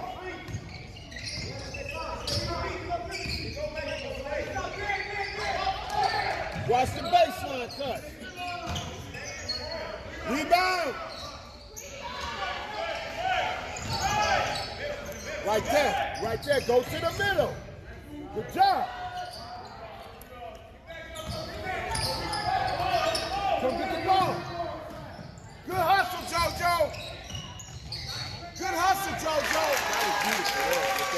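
A basketball dribbled repeatedly on a hardwood gym floor during play, with players' and spectators' voices calling out over it.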